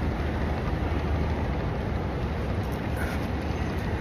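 Steady low rumble and hiss of wind on a phone's microphone.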